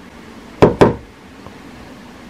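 Two quick knocks with a hand on the shade of a Yeelight LED Smart Lamp D2, about a fifth of a second apart: the double-knock gesture that switches the lamp on.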